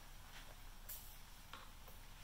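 A few faint clicks and light handling noise as a motorcycle side-view mirror's stem is handled and screwed into its handlebar mount, about four short ticks over two seconds.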